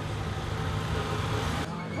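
A vintage car's engine idling steadily, a low even hum under outdoor background noise; the sound changes abruptly shortly before the end.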